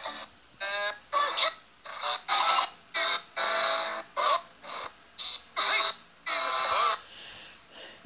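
A string of about a dozen short, abruptly cut bursts of cartoon soundtrack, chopped and repeated in quick succession with brief silent gaps between them.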